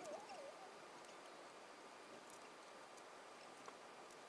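Near silence: faint room tone, broken in the first half-second by a short wavering chirp-like squeak and near the end by a faint tick.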